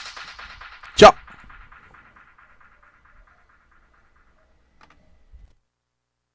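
Electronic dance music fading out, its fast even beat dying away over about four seconds. About a second in comes one loud, short, voice-like burst, then a couple of faint knocks.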